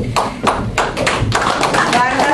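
Audience applauding, a dense patter of many hands clapping that starts suddenly.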